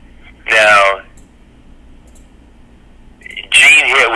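Speech only: a man's voice, sounding like it comes over a telephone line, with a short utterance about half a second in and more talk starting near the end. Quiet line hiss fills the gap between.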